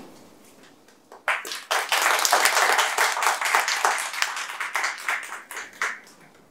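Audience applauding, starting about a second in and dying away at the end.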